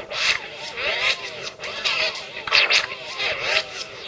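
A music track scratched on the djay iPad app's virtual turntable: the sound sweeps up and down in pitch as the platter is dragged back and forth, six or seven strokes in all.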